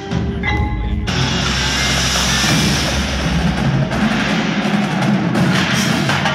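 Indoor percussion ensemble performing: a struck note at the start, then from about a second in the full group plays loudly, drums and a dense crashing wash together, with sharp drum strokes toward the end.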